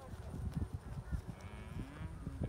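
Faint, drawn-out lowing of cattle, with soft low thuds underneath.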